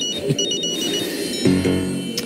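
Mobile phone ringtone: a quick melody of short, high electronic beeps that stops about a second in when the call is picked up, heard over background music.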